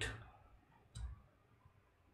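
A single short computer keyboard key click about a second in, otherwise near silence; the click fits a key held down to delete typed text.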